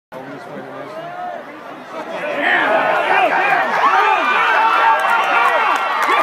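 Football crowd and sideline players shouting and cheering, many voices at once, swelling much louder about two seconds in.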